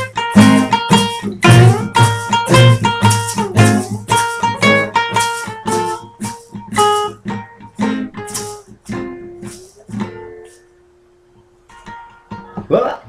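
Several acoustic guitars strumming together in a steady rhythm, about two strums a second, as a song comes to its end. After about six seconds the strumming thins to a few single plucked notes, and a last note rings out and fades about ten seconds in.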